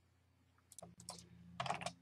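Computer keyboard keys being typed: a few short keystrokes beginning just under a second in, the loudest near the end.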